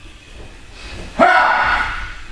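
A person's voice: a short wordless vocal sound with a clear pitch, starting sharply just past halfway and lasting under a second.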